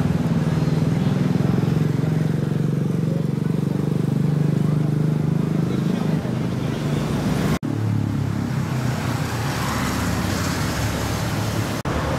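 Night-time city street sound: a motor vehicle engine, with a motorcycle riding past, under voices. After a sudden cut about seven and a half seconds in, road traffic, with cars driving past.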